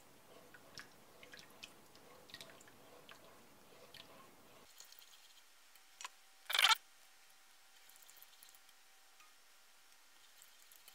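Silicone spatula stirring undissolved granulated sugar in water in a stainless steel pot: faint scraping and gritty crunching, with one short, louder sound about two-thirds of the way through.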